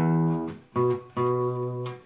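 Acoustic guitar: the open low E string plucked and left ringing, then two more low bass notes plucked about three-quarters of a second and just over a second in, the last one held.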